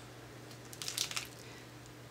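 A few faint crinkles and clicks of a clear plastic stamp packet being handled, about a second in, over a low steady hum.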